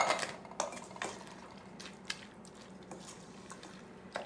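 Kitchenware clinking around a stainless steel mixing bowl: a sharp knock at the start and a couple more within the first second, then a few faint scattered taps.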